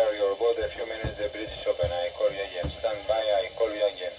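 Speech coming over a Lowrance marine VHF radio's loudspeaker: a steady stream of talk that sounds thin and narrow, with radio hiss behind it.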